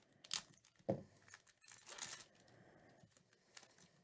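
A 2014 Topps Strata football card pack being torn open, its wrapper crinkling in several short bursts, the longest about two seconds in.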